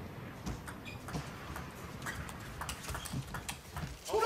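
Table tennis rally: the ball clicking off rackets and the table in a string of sharp knocks at irregular spacing, over a low hall background.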